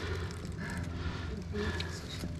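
Small forest creek running shallowly over mud and stones: a steady low rush of water with no distinct events.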